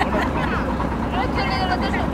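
Passenger riverboat's engine running steadily, with the wash of water around the hull and people's voices over it, strongest in the second half.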